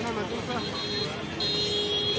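Busy street ambience: traffic noise with people talking, and a steady high tone held through the second half.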